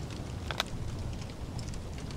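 Quiet, steady background hiss with a soft tick or two about half a second in, from a foil food pouch being emptied into a plastic bowl.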